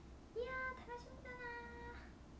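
A young woman humming a tune: two held notes, the first starting about half a second in, the second a little lower and longer.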